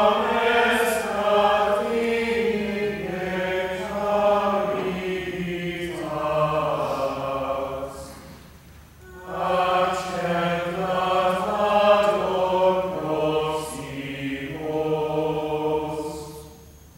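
A small choir sings unaccompanied Latin plainchant. There are two long phrases, with a short pause for breath a little past halfway.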